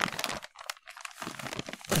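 Clear plastic parts bag crinkling in irregular crackles as it is picked up and handled.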